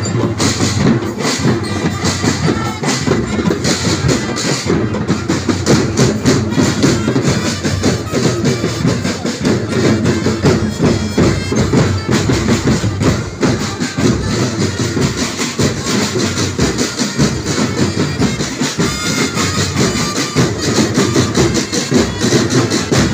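Street drum band playing: snare and bass drums beating a fast, dense rhythm without a break, with a reedy wind melody over it.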